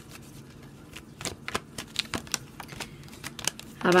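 Tarot cards being handled: a run of light, irregular card clicks and snaps as cards are shuffled and moved about. They come more often from about a second in.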